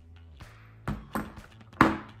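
Soft background music with three short clicks of small objects handled on a table. The loudest click, near the end, is a metal nail clipper being set down on the tabletop.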